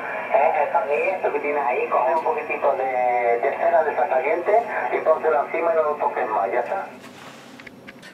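A ham radio operator's voice received on single sideband on the 20 m band, coming from an Icom IC-718 HF transceiver tuned to 14.144 MHz upper sideband. It sounds narrow and thin, with no treble. Near the end the voice stops and a short stretch of band hiss follows.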